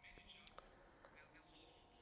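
Near silence: faint room tone with faint, murmured voices and a couple of small clicks.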